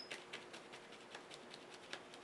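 Faint, light taps of a paint applicator dabbing gold shimmer paint onto the painted surface, about two taps a second.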